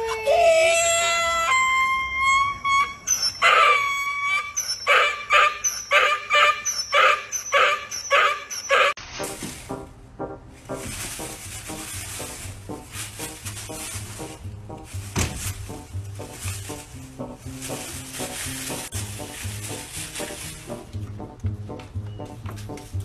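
A miniature donkey braying: a long run of loud, rhythmic hee-haws about two a second that cuts off about nine seconds in. After that comes a quieter, noisier stretch with a steady low beat from a music track underneath.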